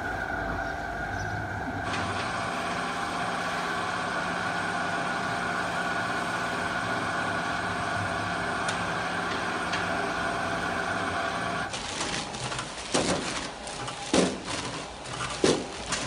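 A steady mechanical drone made of several held tones, which cuts off abruptly about twelve seconds in. After it come irregular sharp knocks and clatter.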